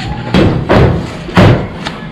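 Thin stainless steel sheet being handled and flexed on a table, with a metal straightedge set against it: three dull thumps in under a second and a half, then a short sharp click.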